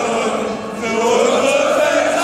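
A large crowd of football fans singing together in unison, holding long notes, with the pitch rising toward the end.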